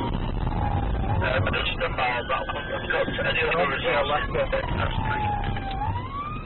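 Police car siren wailing in a slow rise and fall, heard from inside the car over engine and road noise. The pitch climbs from a low about a second in to a peak near three seconds, sinks again just before the end, and then starts to climb once more.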